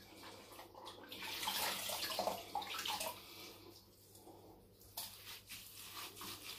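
Water splashing in a bathroom sink as a face is rinsed with handfuls of water after a shave, strongest for a couple of seconds in the middle and then dying down to a few drips and small knocks.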